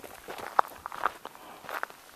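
A hiker's footsteps on a dry, gravelly dirt trail: several short steps, the sharpest a little over half a second in.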